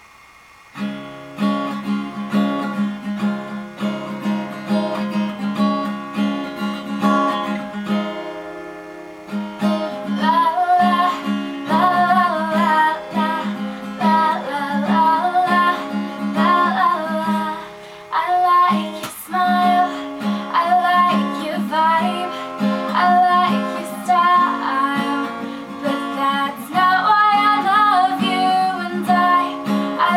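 Acoustic guitar playing a song, starting about a second in; a woman's solo singing voice joins about ten seconds in and carries on over the guitar.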